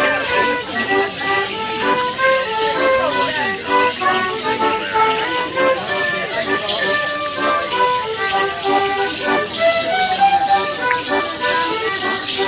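Live traditional English folk tune played for a Cotswold morris handkerchief dance: a lively, steady melody of short held notes.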